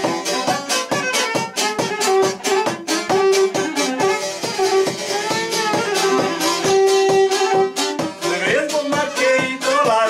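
A violin and a long-necked plucked string instrument play a lively folk tune together live: regular quick strumming under the violin's held and ornamented melody. Near the end a man's voice comes in singing.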